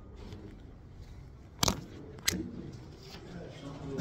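Two sharp knocks about two-thirds of a second apart, over a low background murmur.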